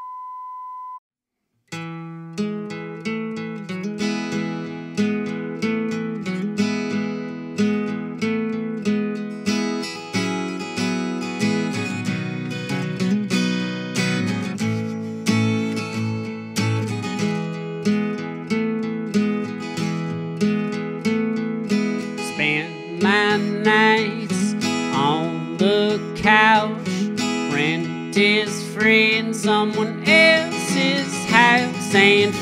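A short steady beep at the very start, then after a brief gap a steel-string acoustic guitar begins a song intro with a regular strummed chord pattern. From about 23 seconds a higher melody with wavering pitch joins over the guitar.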